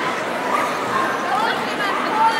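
A small dog yipping and whining a few times in short, high calls over steady crowd chatter.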